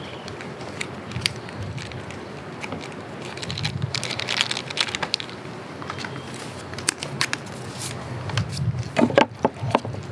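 Sauce poured over sliced raw beef in a stainless steel bowl, then chopsticks mixing it, clicking and knocking against the metal bowl in quick irregular taps, sharpest near the end.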